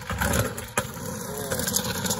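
Stunt scooter wheels rumbling down a rough, bumpy paved bank and rolling out across asphalt, with a sharp knock about three-quarters of a second in.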